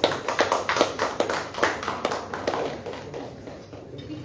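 Scattered hand-clapping from a small group of people, many uneven claps that thin out and fade over the last second or so.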